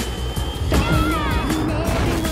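A film soundtrack: music mixed with the rushing blast of cartoon amusement-park rides firing off like rockets. About a second in, a few falling whistle-like tones sound.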